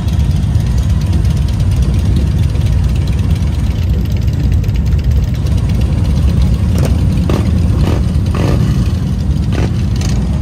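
Many motorcycle engines, largely Harley-Davidson V-twins, idling together in a steady low rumble, with a few short sharper sounds in the second half.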